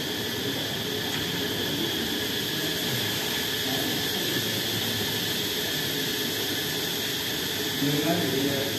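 Steady hissing room noise with no distinct event.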